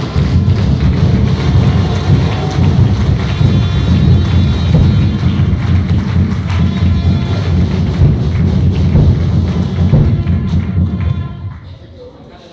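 Loud audience applause lasting about eleven seconds, dying away near the end.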